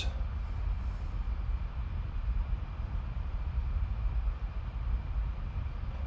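Steady low background rumble with a faint hiss.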